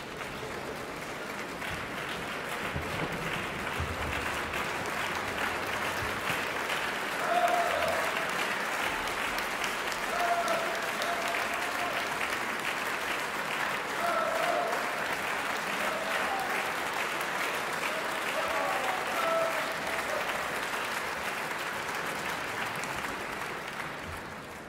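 Large theatre audience applauding steadily in a reverberant hall, welcoming the conductor and orchestra, with a few short calls from the crowd rising above the clapping. The applause dies away near the end.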